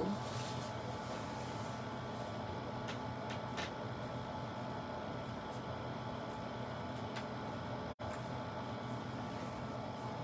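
Steady mechanical hum of a running room appliance, with a few faint clicks about three seconds in; the hum cuts out for an instant near eight seconds in.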